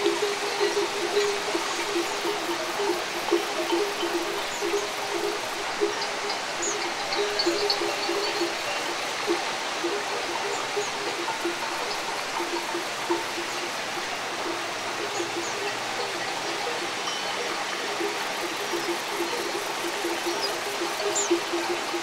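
Cowbells clanking at irregular intervals over the steady rush of a flowing river. The bells ring more often in the first several seconds, then more sparsely.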